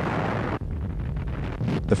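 Low, steady rumbling noise from a battle sound effect; a higher hiss over it drops away about half a second in, leaving mostly the low rumble.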